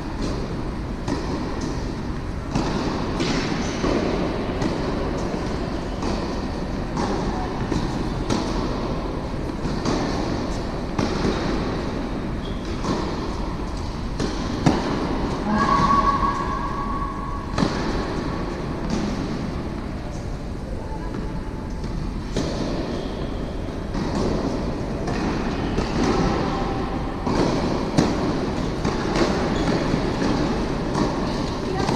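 A steady low rumble, with a few sharp tennis racket-on-ball hits in the second half as a point is played on an indoor hard court.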